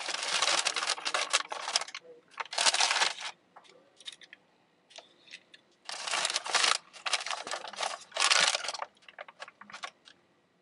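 Paper fast-food packaging being handled and opened, crinkling and rustling in several bursts up to about a second long, with short clicks and quieter gaps between them.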